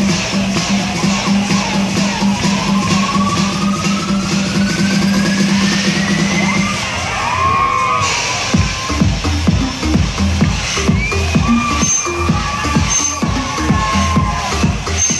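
Loud electronic dance music playing at a fairground ride. A rising pitch sweep builds through the first half, then a steady beat with heavy bass starts about eight seconds in.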